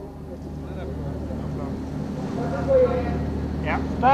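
Indistinct voices of people talking in a crowded room, over a steady low hum. A voice comes in clearly near the end.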